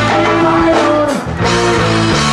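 A live reggae band playing, with electric guitar and bass guitar over drums; the music briefly drops back a little past halfway.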